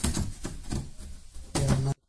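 Clicks and knocks of a hand handling an LED TV's plastic back cover, under a man's low, indistinct voice. Both stop abruptly near the end.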